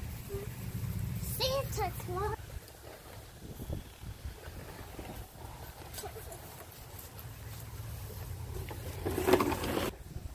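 Brief, indistinct voices with no clear words: a few short, high, gliding calls in the first couple of seconds and a loud short vocal burst near the end, over a low rumble of wind on the microphone at the start.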